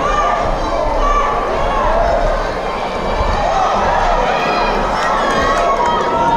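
Boxing crowd shouting and cheering, many voices calling out over one another.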